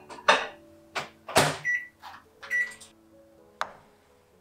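Microwave oven at the end of its cycle: two short beeps, with clicks and knocks as its door opens and a glass bowl is handled.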